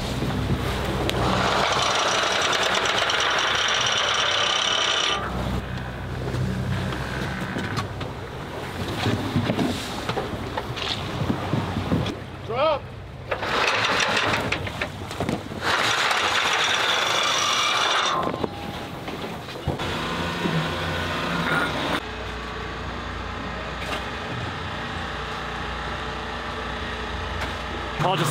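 Boat engine running steadily under two long rushes of noise as anchors are dropped and anchor line runs out over the side, with a brief shout in between.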